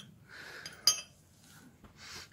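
A small metal bracket being handled and set down on a concrete floor, with a faint scrape and then one sharp metallic clink a little under a second in.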